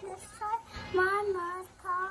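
A child singing a children's song: a couple of short notes, then a long held note about a second in, and another note starting near the end.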